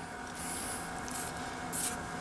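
Hand rubbing across the face of an expanded-polystyrene foam ICF block, two short scratchy rubs about half a second in and near the end, over a faint steady hum.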